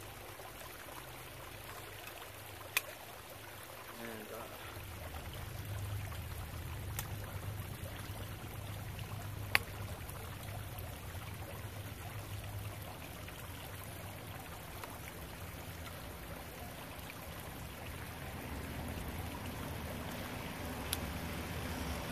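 Sections of a take-apart kayak paddle being handled and fitted together, with two sharp clicks about 3 and 10 seconds in and a fainter one near the end, over a steady background hiss and low hum.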